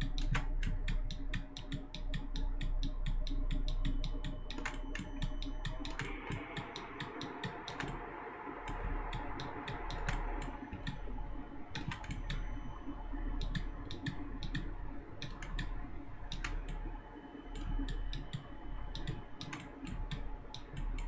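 Computer keyboard keys and mouse buttons clicking in a quick, irregular stream over a low steady hum, as keyboard shortcuts such as Ctrl+Z (undo) are pressed during mouse sculpting.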